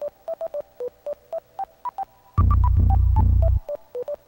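Electronic synthesizer music: short, staccato synth notes pick out a quick melody, several to the second, and a little past halfway a loud, deep bass line comes in for about a second, then drops out.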